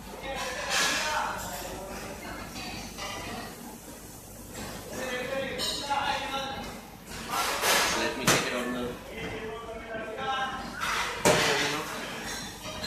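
Voices talking in the background, with two sharp knocks about eight and eleven seconds in.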